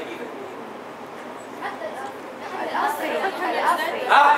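Indistinct voices chattering in a room, several people talking at once. They start softly about a second and a half in and grow louder near the end.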